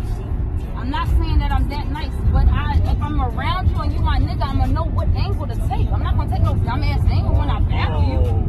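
Steady low road rumble inside a moving car's cabin at freeway speed, with people talking over it throughout.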